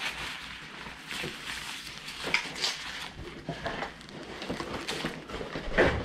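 Scattered rustling and light knocks as a fabric bib is pulled off a toddler and things are handled at the high chair, with a louder burst of noise near the end.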